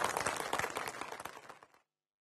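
Audience applause: many hands clapping, dying away and then cut off abruptly near the end.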